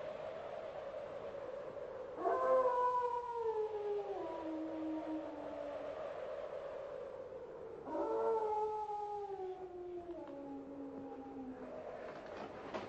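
A collie howls twice. Each howl jumps up in pitch and then slides slowly down over about three seconds, over a steady held tone.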